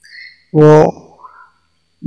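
A man's voice saying a single held syllable, "vo", with short pauses before and after it.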